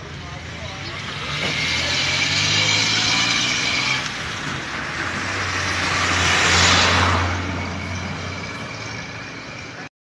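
Motor vehicle engine running with a low steady hum that swells and ebbs, loudest about six to seven seconds in under a rushing hiss, with voices in the background; the sound cuts off abruptly just before the end.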